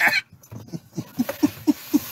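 A man laughing hard: a quick run of short, falling 'ha' sounds, about five a second, after a louder start.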